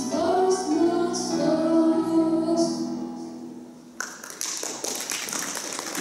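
A boy's solo singing voice holds the final note of a song into a microphone, fading away about three seconds in. About four seconds in, an audience breaks into applause.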